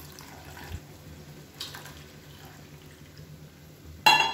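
Milk being poured in a thin stream into a steel pan of simmering vermicelli and sago payasam, a faint steady trickle over a low steady hum.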